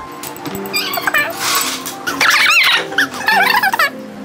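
Light background music with three short, high-pitched squeaky, animal-like warbling sound effects laid over it, about a second apart.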